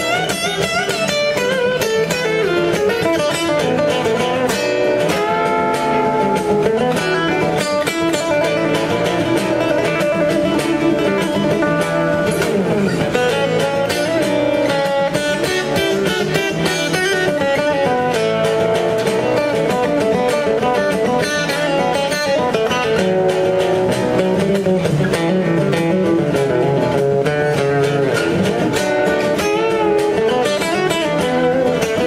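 Acoustic guitar played live and solo, an instrumental passage of picked notes and chords with no singing.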